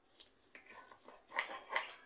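Faint sounds of a knife cutting through a stick of butter in its paper wrapper on a countertop, with two short soft rustles about a second and a half in.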